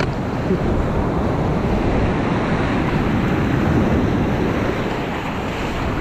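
Ocean surf washing in and fizzing over shallow sand, a steady rush with wind buffeting the microphone.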